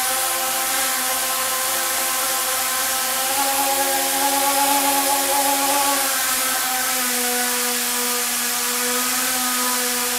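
Small electric propeller motors at the tip of a cantilevered camera rod spinning with a steady whine, which rises in pitch about three seconds in as the throttle goes up, then drops back around six to seven seconds.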